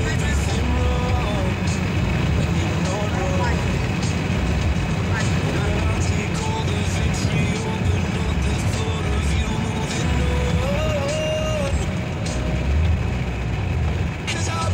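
Steady road and engine rumble inside a moving car's cabin at highway speed, with music and a singing voice playing over it.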